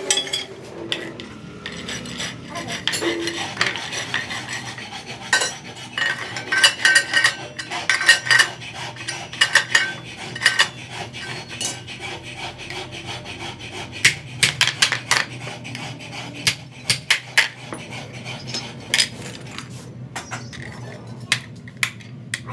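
Sheet-steel brick molds being handled and fitted together, giving irregular sharp metallic clanks and clinks, in clusters throughout.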